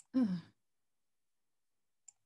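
A woman's short hesitant 'uh', falling in pitch, then silence.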